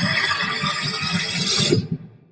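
Movie-trailer sound effects: a dense, noisy rush with quick low thuds that grows louder and cuts off abruptly near the end.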